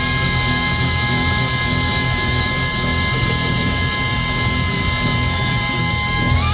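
Jazz quartet of alto saxophone, trumpet, double bass and drums holding a long closing note over a cymbal and drum roll. The horn pitches stay steady, the climax of the piece just before it ends.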